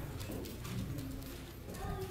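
Faint, indistinct low voices murmuring in short snatches, with no clear words.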